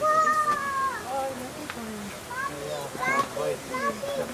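A child's voice calling out in one long high note that falls away at the end, followed by several short high voices chattering.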